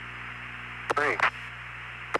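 A single spoken height callout, 'three', over a narrow, hissy air-to-ground radio link, with steady static and low hum running underneath.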